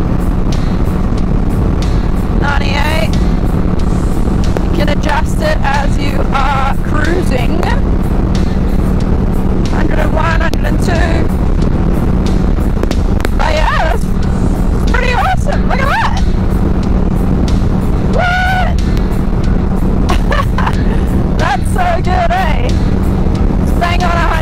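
Kawasaki Vulcan S 650 motorcycle engine and wind rush at a steady highway cruise, the speed held by a throttle lock, with a constant hum under a loud rushing noise. Music with a voice plays over it.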